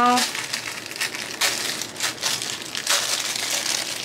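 Clear plastic packaging bag crinkling irregularly as it is opened and handled, over a steady hiss of heavy rain pouring.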